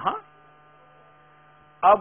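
Faint steady electrical hum, a low buzz with many overtones, heard in a pause between a man's spoken words.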